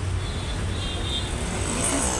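Steady low rumble of a bus engine and road traffic heard from inside a city bus.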